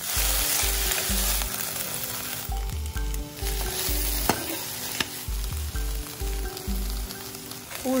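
Chopped capsicum, onion and potato sizzling in hot oil in a wok while being stirred with a spatula, with a few sharp clicks of the spatula against the pan.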